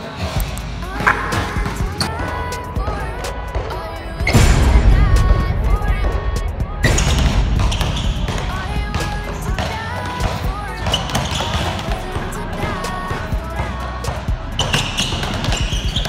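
A basketball being dribbled hard on a gym floor, under a music track with a vocal line; a heavy bass comes in about four seconds in.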